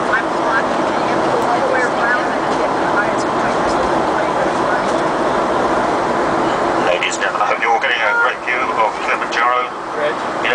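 Steady aircraft cabin noise in flight, with people's voices talking under it; about seven seconds in the noise drops and the voices come through more clearly.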